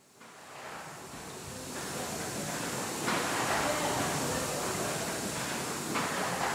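Hawthorn Davey triple-expansion steam pumping engine running in steam: a steady hiss of steam with machinery noise, fading in over the first two seconds.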